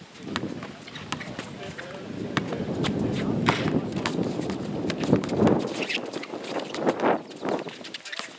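A basketball bouncing on an outdoor hard court in irregular sharp thuds as it is dribbled, with running footsteps on the court.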